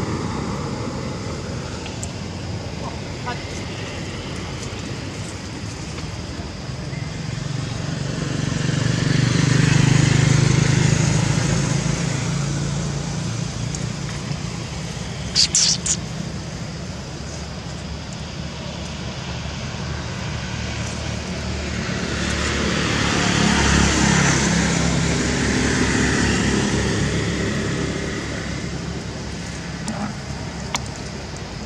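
Motor vehicles passing by, two of them, each engine-and-tyre sound swelling and fading over several seconds, over a steady background hum. A brief high-pitched chirping cluster sounds about halfway through.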